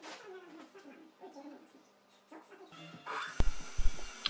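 Faint background music, then, about three seconds in, a sudden cut to a tool and cutter grinder's cup wheel running much louder, with a steady high whine, hiss and a few sharp low knocks as it grinds a carbide tool bit.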